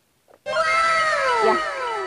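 A drawn-out, voice-like 'wow' sound effect added in editing, with several layered tones sliding downward together for about a second and a half.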